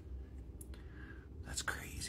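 A woman's soft breathy whisper, brief and faint, with a short rising breathy sound near the end, over a low steady hum.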